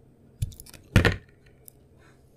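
Utility knife blade cutting into a painted bar of soap: a short crunch about half a second in, then a louder, longer crackling cut around one second, with a faint click near the end.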